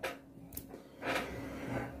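A quiet pause between a man's spoken sentences: faint room tone with a small click about half a second in, then a soft breath through the second second before he speaks again.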